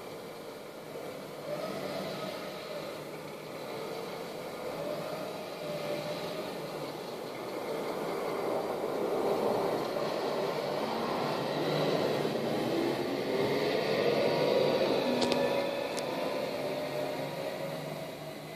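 Volvo refuse truck with a Farid rear-loader body working down the street: its engine and bin-lift and compaction hydraulics running, with whining tones that climb in pitch and grow louder in the second half.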